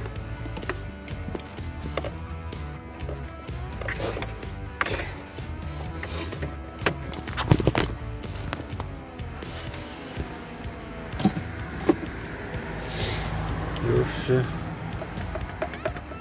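Radio playing music and talk in the background, with a few sharp knocks scattered through it.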